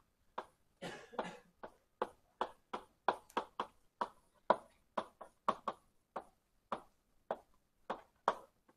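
Writing on a lecture board: a quick, uneven series of short sharp taps, about two to three a second, as an equation is written out.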